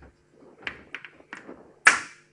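Chalk tapping and clicking on a blackboard during writing: a run of irregular sharp taps, then one much louder knock near the end that rings briefly.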